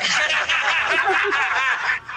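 People laughing hard in quick, high-pitched pulses over a live video call, breaking off suddenly at the end.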